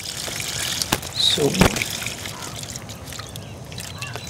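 Water trickling and sloshing from a wet hand net holding small aquarium fish just lifted from a tank, with a click about a second in and a short swooping sound about a second and a half in.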